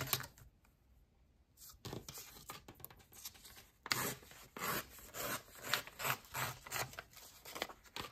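A strip of old ledger paper being torn off along a metal ruler. After a brief quiet it comes as a run of short, irregular tearing strokes.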